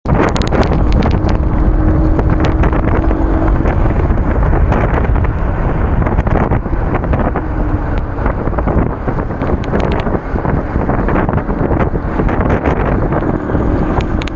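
Wind buffeting the microphone of a two-wheeler in motion, a loud, continuous rush with gusty bumps, over road and traffic noise.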